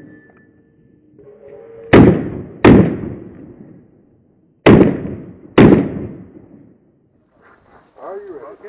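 Four pistol shots fired in two quick pairs, the shots in each pair under a second apart and the pairs about three seconds apart, each shot echoing briefly.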